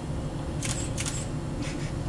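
A few short, sharp clicks, in two pairs about half a second apart, over a steady low room hum; no fart is heard.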